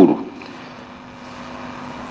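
A man's word ends just at the start, then a steady background hiss with a faint low hum fills the pause: the recording's room tone.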